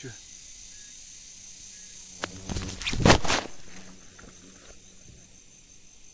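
Insects, crickets by their sound, trilling steadily and high-pitched. About two and a half seconds in comes a loud rustle lasting about a second.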